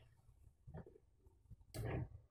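Near silence: faint room tone, with one short faint noise near the end.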